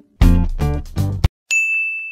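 Edited-in sound effects: three loud musical notes in quick succession, then a single high bell-like ding held for about half a second near the end.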